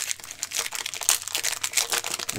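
Plastic wrapper of a Panini Donruss Optic basketball cello pack crinkling and tearing as it is peeled open by hand, a dense run of sharp crackles.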